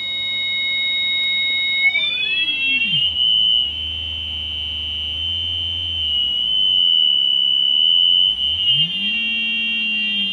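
Ring-modulated synthesizer tone from a four-quadrant multiplier, a triangle wave multiplied by a triangle wave. It is a high buzzy tone whose side pitches glide together into one steady tone about three seconds in as the modulating frequency is swept down, then fan apart again near the end while a low tone slides back up.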